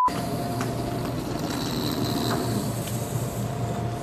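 Steady background noise with a low hum and a faint higher tone running through it, with no speech.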